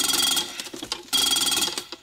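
Mechanical diesel injector chattering on a hand-pump pop tester as the handle is pumped fast, firing a rapid string of pops that run together into a buzz, in two bursts with a short gap near the middle. The steady popping is the sign of a healthy injector that reseats cleanly; it opens at about 3,300 psi.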